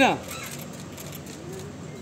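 A man's voice calls "Ma'am" at the very start. After it comes a low outdoor background of faint distant voices with light, high clicking or jingling noises.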